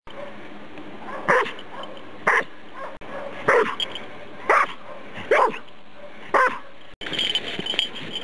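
A Tervueren (Belgian Shepherd) dog barks six times, about once a second, while digging into snow. This is the bark alert an avalanche search dog gives on finding a buried person.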